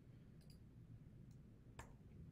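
Near silence with a few faint clicks of a computer mouse, the clearest one near the end.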